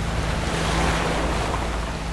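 Sea surf breaking and washing over a pebble-and-boulder shore: a steady, rushing wash of foaming waves.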